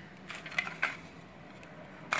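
A few light clicks and taps of a plastic wall socket module and cover plate being handled on a tile floor, grouped between about a third of a second and a second in.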